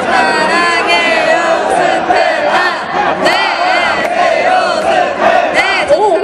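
A festival audience shouting and yelling, many voices overlapping, with high-pitched calls rising and falling.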